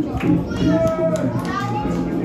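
Children's voices shouting and calling out, several overlapping at once, with a couple of short sharp knocks among them.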